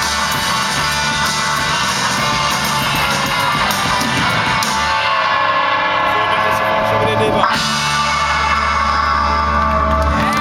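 Live instrumental surf-rock band playing: electric guitars, bass and drums. About halfway through the cymbals drop away and long held chords ring out over a sustained low bass note.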